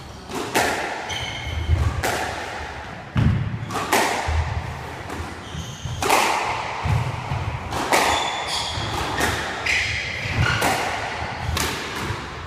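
Squash rally: the ball cracks off the rackets and thuds against the court walls about once a second, each hit ringing briefly around the court, while shoes give short high squeaks on the wooden floor between strokes.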